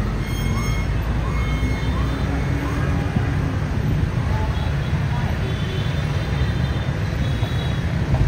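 Steady low rumble of dense motorbike and car traffic passing along the street. Over the first three seconds a short rising-and-falling tone repeats every second or less above it.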